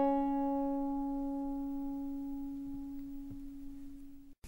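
A final strummed acoustic guitar chord ringing out and slowly fading away at the end of a pop song.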